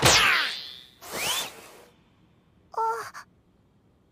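Anime soundtrack effects: a loud sweeping whoosh with falling tones at the start, then a second, rising swish about a second in. A short voiced gasp follows near three seconds.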